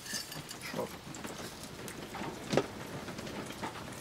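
Steady rain falling, heard from inside a travel trailer through an open, screened window, with a single sharp knock about two and a half seconds in.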